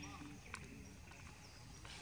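Quiet outdoor background with faint, low, distant voices and two light, sharp clicks, one about half a second in and one near the end.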